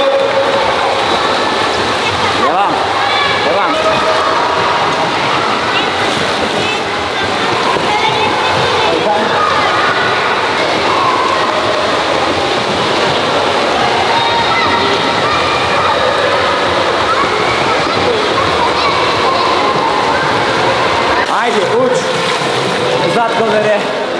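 Busy indoor swimming pool: many children's voices talking and calling at once, echoing in the hall, over water splashing.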